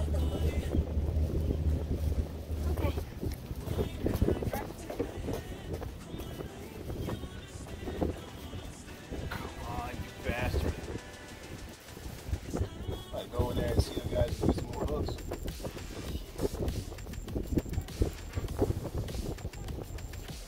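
Indistinct background voices and music, with a low steady hum that stops about three seconds in.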